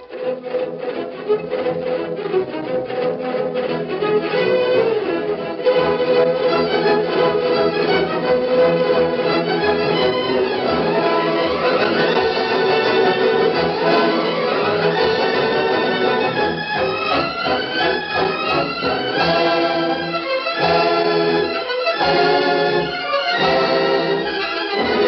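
Orchestral music from a 1940s radio drama: strings with brass, at a fast pace, with rapidly repeated notes in the first few seconds.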